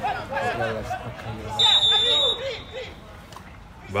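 A referee's whistle blows once, a short high blast of under a second about halfway through, signalling the free kick to be taken. Players' voices call out on the pitch around it.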